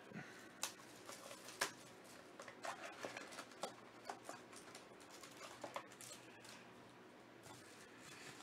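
Faint crinkles and clicks of a foil-wrapped trading-card mini-box being handled and set down on a mat, about a dozen separate light ticks.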